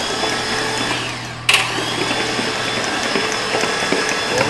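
Starter motor steadily cranking a Chevy 5.3 V8 with no compression bite, a spark test with a spark plug out, with one sharp snap about one and a half seconds in.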